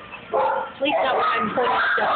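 Dogs yipping and barking.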